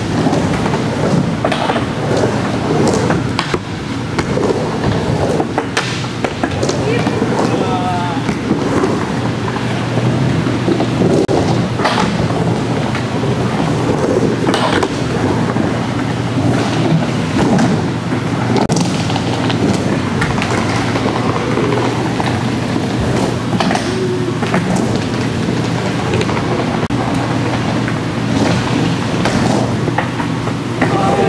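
Skateboard wheels rolling and carving around a bowl, a steady rumble broken by sharp clacks as the trucks and board hit the coping and walls.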